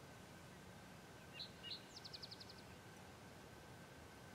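A songbird calling faintly over near-silent outdoor quiet: two short high notes about a second and a half in, then a quick trill of about seven notes.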